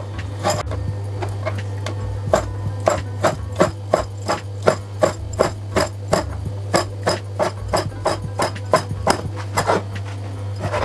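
Chef's knife chopping raw chicken breast on a wooden cutting board, the blade knocking on the board about three times a second in a steady rhythm.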